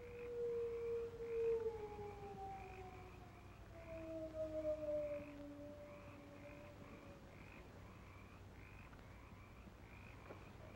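A hound's long howl, sliding slowly down in pitch and fading out after about seven seconds. Underneath, a faint rhythmic chirping pulses about twice a second.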